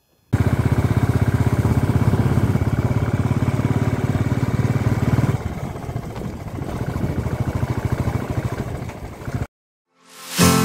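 Motorcycle engine running with an even exhaust beat as the bike rides along. It runs louder for the first five seconds or so, then drops back quieter, and cuts off abruptly just before the end.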